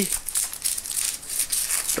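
Expanded polystyrene (styrofoam) being crumbled and rubbed apart between the fingers into small beads: a dense, irregular crackle of many small clicks.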